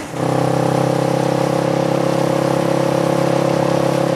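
Small motorcycle engine running steadily at an even pitch, cutting in abruptly just after the start.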